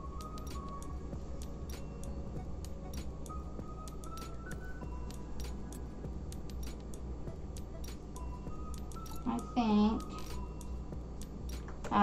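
Granulated sugar pouring from a carton into a plastic measuring cup, heard as a run of small scattered clicks, over soft background music and a low hum. A short voiced sound comes about ten seconds in.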